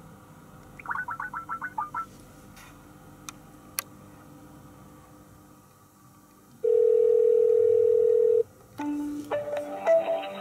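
Outgoing Skype call to a toll-free line: a quick run of short beeps about a second in, then one steady North American ringback tone lasting about two seconds, the loudest sound. Near the end a short run of changing tones starts as the line is answered.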